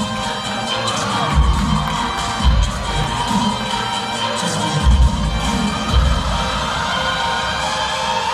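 A crowd cheering and shouting over loud dance music, with a few heavy bass hits in the music.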